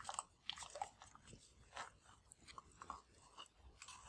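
Metal spoon scraping and scooping thick sour cream out of a plastic tub into a bowl: faint, irregular soft clicks and wet scrapes.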